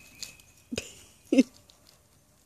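Two short, stifled bursts of a woman's laughter about half a second apart, each falling in pitch, with a few faint clicks around them.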